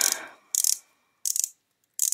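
A twist-up concealer stick being wound up, its tube's ratchet clicking in short bursts with each turn, three bursts about 0.7 s apart.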